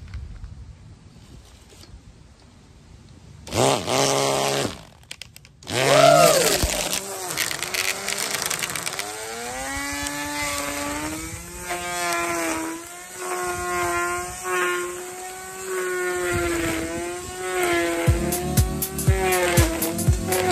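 Electric string trimmer motor whining: a short spin-up and spin-down, another brief pulse, then from about nine seconds in it runs steadily, its pitch wavering as the load changes. Near the end comes a rapid run of knocks as the spinning line cuts along the edge of the brick path.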